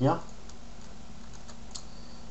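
A few faint computer clicks over a steady low hum.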